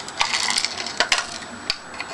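Small hard fingerboard parts rattling and clicking inside a small cardboard box as it is handled, with a few sharp clicks over a light rattle.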